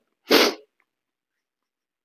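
A single short, sharp burst of breath from a man, about a third of a second in.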